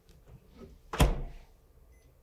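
Microwave oven door swung shut, a single sharp thunk about a second in.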